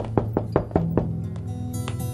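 A hand knocking on a wooden door: five quick knocks within the first second, over soft background music.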